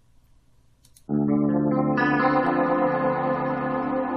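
About a second of near silence, then a recorded guitar track starts playing back, ringing out held chords with a change about two seconds in.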